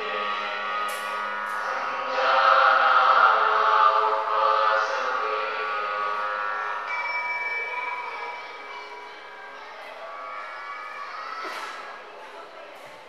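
Voices chanting a mantra together on long held tones, loudest a few seconds in and fading away over the second half.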